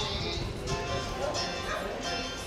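A dog barking and yipping in short, excited calls over background music.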